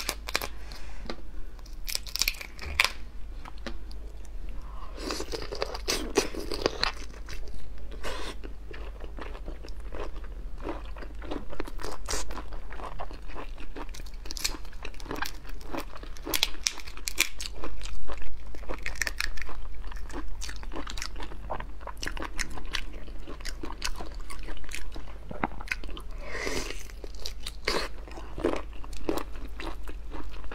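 Raw black tiger prawns being shelled by hand, close up: the shells crackle and snap in many small irregular clicks as they are pulled from the flesh, with wet chewing of the raw prawn mixed in.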